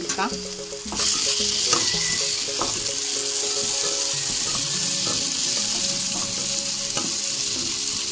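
Chopped onions, tomatoes and curry leaves sizzling in a nonstick pan while a spatula stirs and scrapes through them. The sizzle grows louder about a second in, as the stirring starts.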